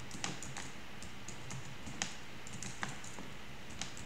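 Typing on a computer keyboard: scattered, irregular keystrokes with short pauses between them.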